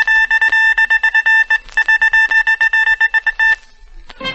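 A loud, high, buzzing tone pulsing rapidly, about ten beats a second, like a ringing alarm. It breaks off briefly about a second and a half in, resumes, then stops about half a second before the end.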